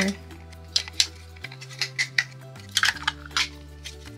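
Small hard plastic miniature-kit parts clicking and tapping against each other as they are handled and fitted together, several short sharp clicks at irregular moments, over soft background music.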